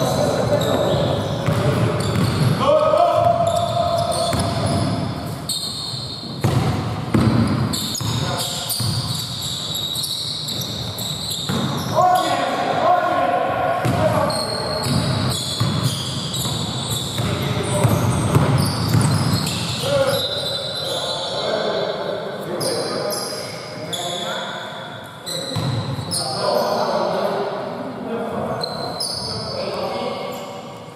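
A basketball bouncing again and again on a hardwood gym floor during play, mixed with players' shouts and calls. Everything echoes in a large hall.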